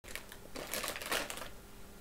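Brief rustling with scattered light clicks, a handling noise that starts abruptly and is loudest in the first second and a half.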